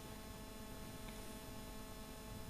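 Faint, steady electrical hum with hiss, the background noise of the recording with no voice in it.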